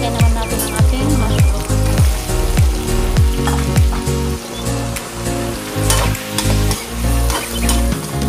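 Background music with a heavy bass-drum beat, over onions and mushrooms sizzling in oil in a wok as they are stirred with a metal slotted spoon.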